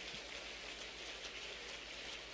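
Faint, steady applause from a large audience, heard as an even patter of many hands clapping.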